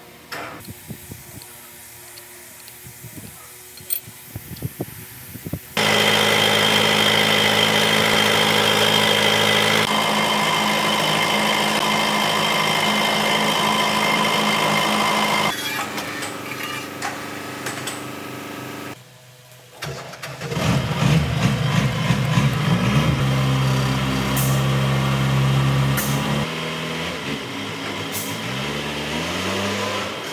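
A wheel loader's diesel engine running steadily, then, after a short break, revving up and down with rising and falling pitch. The first few seconds hold only faint clicks and knocks.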